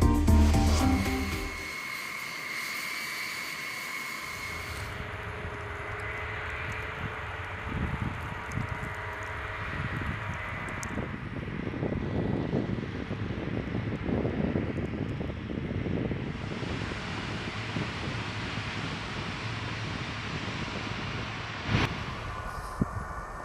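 Music fades out within the first two seconds, then a steady engine rumble with a noisy hiss runs on, its texture shifting once about two-thirds of the way through.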